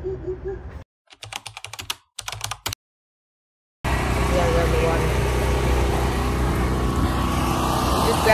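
Choppy edited audio: a brief wavering pitched call, then short fragments of rapid clicking broken by dead silence. From about four seconds in there is steady, loud outdoor noise with a deep rumble, like traffic or wind on a phone microphone.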